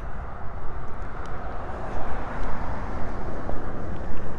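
Steady outdoor rush of distant traffic over a low rumble, swelling slightly about two seconds in.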